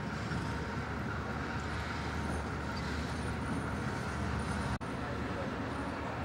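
Steady rumble and running noise of a passenger train moving on the track, heard from on board. The sound cuts out for an instant near the end.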